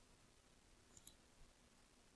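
Near silence, with two faint computer mouse clicks in quick succession about a second in.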